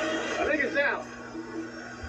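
Muffled voices playing back through a TV speaker in the first second, then a low steady hum.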